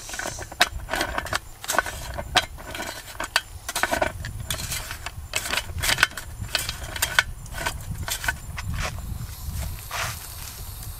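Irregular clicks, taps and knocks of metal as a drinking fountain's bubbler head is gripped, twisted and set in place by hand, over a low steady rumble.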